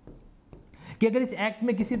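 Faint strokes of a marker writing on a whiteboard in the first second, then a man speaks, louder than the writing.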